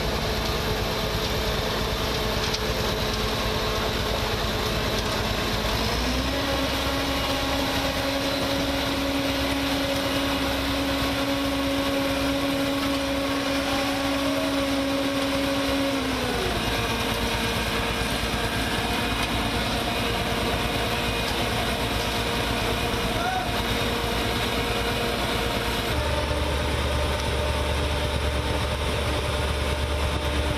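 Diesel engines of an asphalt paver and a tipper truck running during road paving. About six seconds in the engine note rises and holds for about ten seconds, then drops back down.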